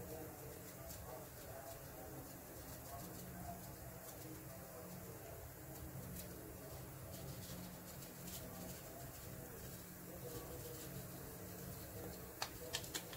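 Quiet room tone: a low steady hum with faint distant voices and a few faint ticks.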